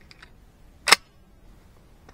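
Emperor Dragon 12-gauge semi-automatic shotgun being readied to fire: a few faint clicks, then one sharp metallic clack a little under a second in.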